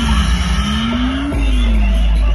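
Loud electronic dance music played over a DJ sound system, in a break without drums: a synth tone slides down, back up and down again over sustained deep bass, with a hissing sweep above it.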